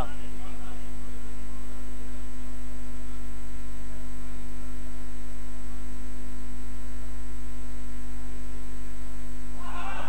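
Loud, steady electrical mains hum in the microphone and sound system: a low drone with a higher steady tone over it, unchanging throughout. A man's voice comes back in near the end.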